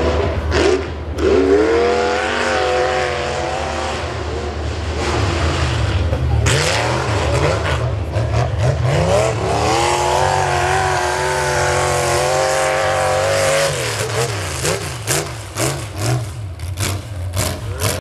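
Pickup race truck's engine revving hard through the turns of a dirt course, its pitch rising and falling over and over as the driver works the throttle. Near the end there is a run of short sharp crackles.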